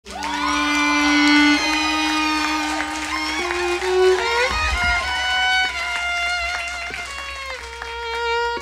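Violin playing slow, sustained notes that step upward in pitch, sliding into some of them, with a brief low thump about halfway through.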